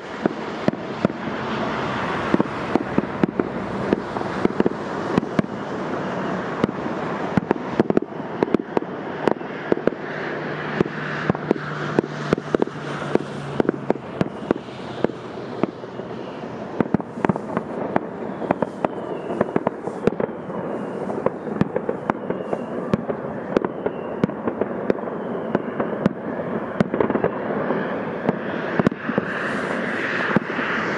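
Fireworks display: aerial shells bursting in a rapid, continuous string of sharp bangs over dense crackling, without pause.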